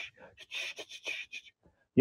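A man laughing quietly under his breath, in short, breathy puffs without voice that die away about a second and a half in.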